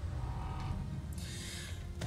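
Movie soundtrack: a low, steady music drone, with a breathy exhale in the second half.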